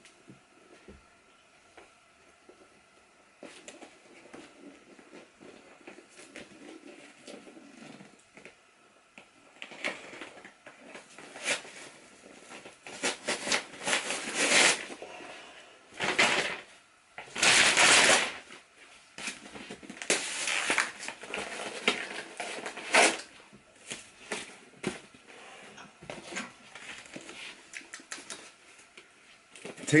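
A thick paperback booklet, held in the teeth, being torn apart by hand. After a quiet stretch of faint rustling come a series of loud paper rips and crackles, loudest around the middle, then smaller tearing and crumpling sounds.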